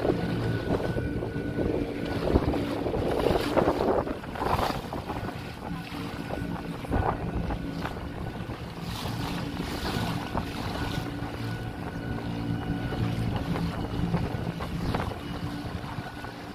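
A small motor boat's engine running at a steady cruising speed, with water splashing along the hull and wind buffeting the microphone.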